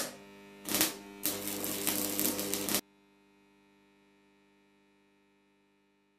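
Sound effect for an animated end-card logo: a steady electric-sounding hum, with a brief whoosh about a second in and a longer noisy swell that cuts off suddenly just before three seconds.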